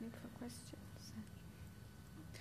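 Quiet whispered speech: a brief hushed exchange between two people, faint over a steady low room hum.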